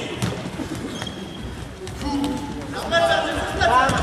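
A football being kicked and bouncing on a hard floor: a few sharp thuds, with players shouting during the last second or so.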